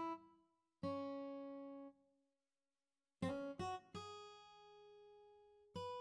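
A sparse lead melody of single plucked acoustic-guitar notes from a virtual guitar instrument played from the piano roll. Each note rings and fades: two notes at the start, a pause of about a second, a quick run of four notes about three seconds in, and one more note near the end.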